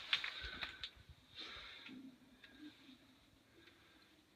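A few faint clicks and handling noises in the first second, then near quiet.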